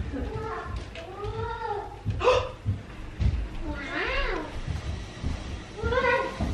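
A toddler's wordless vocalizing: drawn-out calls that slide up and down in pitch, a few times. A sharp knock comes a little over two seconds in, with soft thumps around it.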